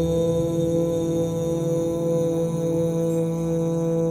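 A voice chanting one long held mantra note on a steady low pitch, with a rich even drone of overtones.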